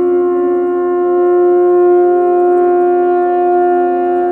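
Electronic synthesizer music: long held notes layered into a steady, sustained chord, without percussion.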